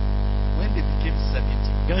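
Loud, steady electrical mains hum with a stack of overtones running under the recording. A faint voice is heard about halfway through, and French speech begins at the very end.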